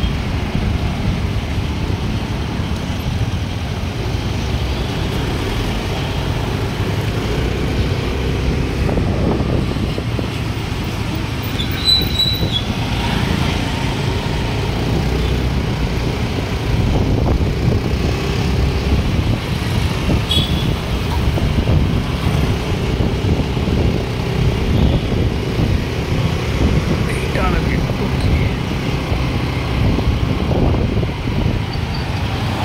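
Steady engine and road rumble from a moving vehicle in city traffic, with a brief high-pitched tone about twelve seconds in.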